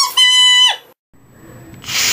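A child's high-pitched voice holding a sung note for under a second, then breaking off; a quiet pause follows before the voice comes back loudly near the end.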